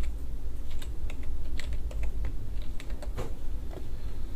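Computer keyboard typing: a string of irregular key clicks, over a steady low hum.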